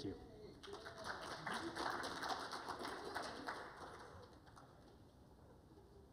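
Audience applause in a conference hall: a dense patter of hand claps that builds about half a second in, then thins out and dies away about four seconds in.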